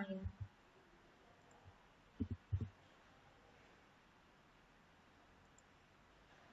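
A few soft computer keyboard and mouse clicks against a quiet room: two just after the start and a quick cluster of three about two seconds in.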